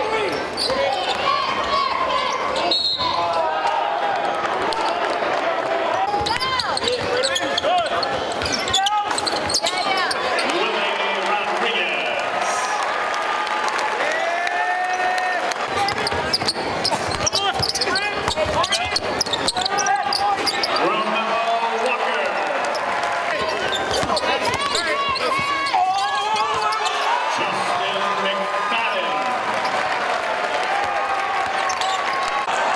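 Live basketball game sound: a basketball dribbled and bouncing on a hardwood court, with short squeaks from sneakers and a crowd's voices and shouts.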